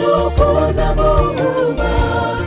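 A gospel choir singing a Swahili wedding song in harmony over a bass line and a steady beat.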